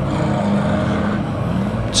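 Engines of several big banger-racing vans running together in the race, a steady low drone whose pitch dips and rises near the end.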